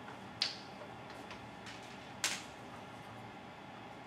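A steady low room hiss with two short, sharp clicks, about half a second in and just after two seconds in.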